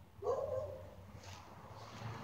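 A short, loud, sharp vocal cry about a quarter second in, rising briefly in pitch and then held for about half a second. A faint brief rustle follows near the middle.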